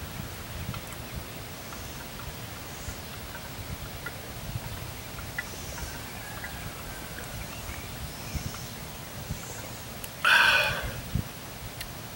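Quiet outdoor background with a few faint bird chirps while a man drinks, then a loud breathy exhale about ten seconds in, an 'ahh' after a long swallow of stout.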